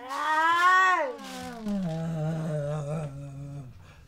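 Wordless voice sounds: a long sliding vocal cry that rises and then falls over the first second, followed by a lower hum held for about two seconds that breaks off before the end.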